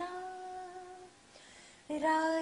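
A woman singing unaccompanied holds one long, steady note that fades out a little after a second in. The next sung phrase begins right at the end.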